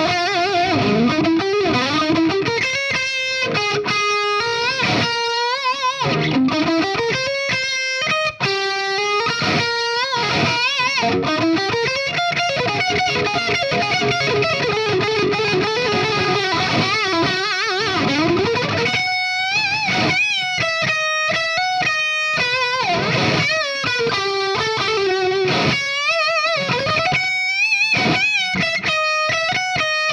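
Distorted electric guitar playing lead lines through a tube preamp on a 1990s Made-in-Japan Washburn N4. Its Floyd Rose tremolo is fitted with an FU-Tone brass big block and noiseless springs. Held notes with wide vibrato and string bends give way to quicker, separately picked notes about twenty seconds in, then more held, bent notes.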